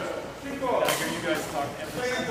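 Badminton racket hitting a shuttlecock, one sharp smack a little under a second in, echoing in a large gym hall over the voices of players on the courts.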